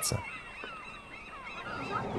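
Faint bird calls: many short chirping calls that rise and fall in pitch, overlapping one another.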